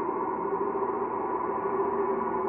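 Sustained electronic drone: a cluster of steady, held tones that does not change in level.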